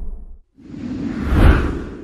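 A whoosh transition sound effect: a rushing noise that swells up to a peak about a second and a half in and then fades away, following the tail of an earlier swell that dies out in the first half second.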